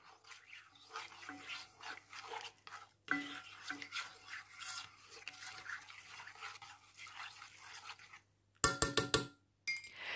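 A spoon stirring dried herbs and spices in cold water in a metal pot, with faint repeated scraping and swishing strokes against the pot. Near the end there is a brief, louder clatter.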